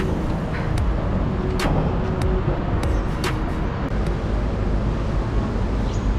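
Wind buffeting the microphone of a camera moving along an outdoor path: a steady low rumble, with a few short sharp clicks in the first half.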